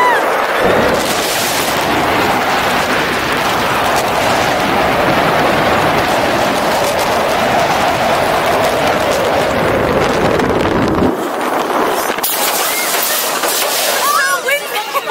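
Steel roller coaster train running at speed: wind buffets the small action-camera microphone over a steady roar of wheels on the track. About eleven seconds in, the low rumble drops off as the ride slows, and a brief burst of hiss follows. A rider's voice rises at the very start.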